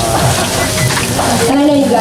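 Hot oil sizzling steadily in a large deep fryer around a giant funnel cake, with a person's voice in the background.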